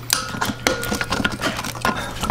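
Small metal clicks and clinks as a valve spring and its steel retainer are pressed down on a cylinder head with a lever-type valve spring compressor, and a magnetic pick tool works at the valve keepers. One click leaves a brief metallic ring.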